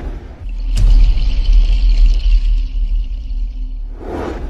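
TV news channel logo ident: a deep bass rumble swells in with a whoosh and a sharp hit about a second in, under a steady high tone, fading near the end.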